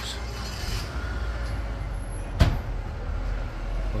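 Steady low rumble of street traffic, with one sharp clunk a little past halfway that is the loudest sound.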